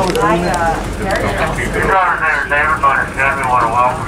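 Voices talking over the low, steady running noise of a parking-lot tram.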